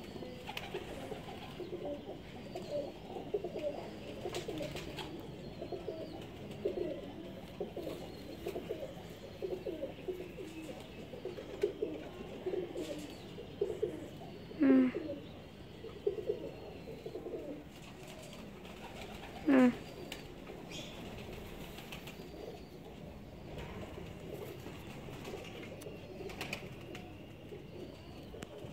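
Domestic pigeons cooing, a long run of short repeated low coos that dies away about two-thirds of the way through. Two loud brief upward-sliding squeals cut in about halfway and again about five seconds later.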